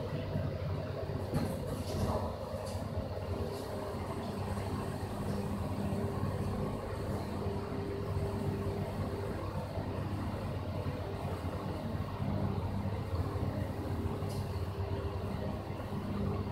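Toshiba SPACEL-GR machine-room-less traction elevator: the centre-opening doors finish shutting with a few light knocks, then the car travels down two floors with a steady hum and a faint steady whine, heard from inside the car.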